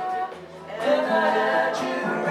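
A live band playing, with acoustic guitar and electric bass, and singing that comes in about a second in after a brief lull.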